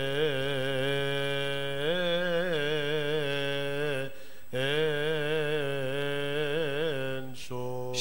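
A single male voice chanting a slow, ornamented Coptic liturgical melody, holding long notes that waver in pitch. There is a short breath break about four seconds in, and a lower voice takes over near the end.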